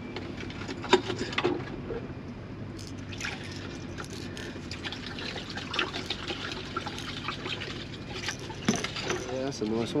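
Small clicks and rattles of plastic squid jigs being handled, over water trickling and a steady low hum.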